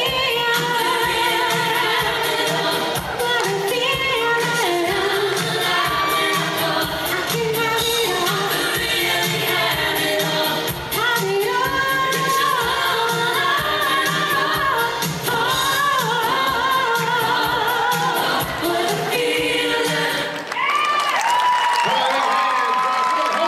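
A group of voices singing a pop song over backing music with a steady beat.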